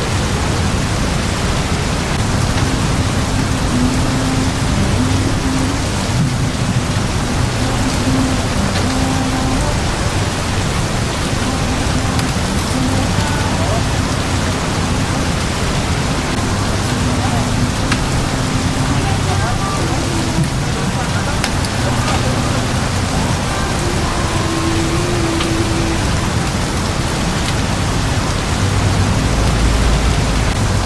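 Steady heavy rain falling on a tarp canopy, with faint voices in the background and a low rumble near the end.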